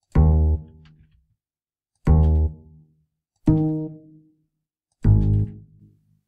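Sibelius notation software playing back four single low bass notes, each sounding as a note is selected and its length adjusted. The notes come one to two seconds apart, each starting sharply and dying away within about a second.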